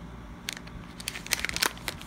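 Thin plastic packaging crinkling as it is handled: a run of irregular short crackles.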